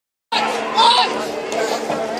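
People's voices talking and calling out, loudest just before a second in, over a steady low drone that holds one pitch throughout.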